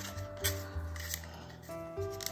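Soft background music with sustained notes and a low bass line, with a few faint clicks of small metal binder clips being fitted onto cardboard tubes.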